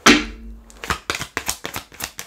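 A sharp knock, then a deck of tarot cards being shuffled by hand: a quick run of light clicks and flicks as the cards slide past each other.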